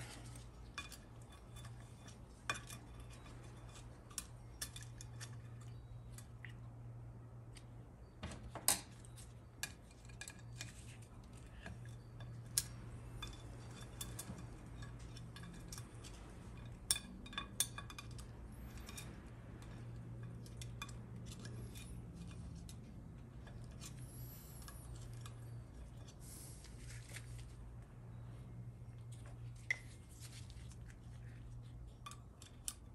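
Light metal clicks and scrapes of a steel pick working in the valve bores of a Ford 4R100 transmission valve body, prying at a stuck piston. The clinks come scattered and irregular over a steady low hum.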